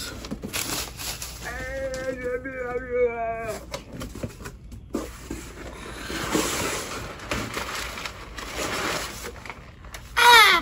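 A man's drawn-out, wavering laugh, followed by the rustle and knocking of a cardboard shipping box and crumpled packing paper as the box is lifted and tipped.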